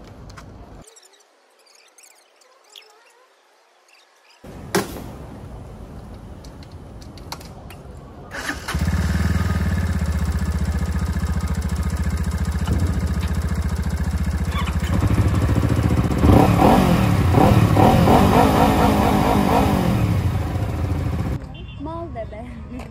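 Yamaha R25 parallel-twin sport bike engine starting about eight seconds in and settling into a steady idle. Near the end it is revved, its pitch rising and falling several times before it cuts off.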